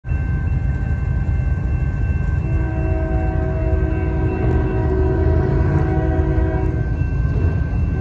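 A train's locomotive air horn blows one long continuous multi-note blast as the train approaches, its chord changing about two and a half seconds in. A steady low rumble runs underneath.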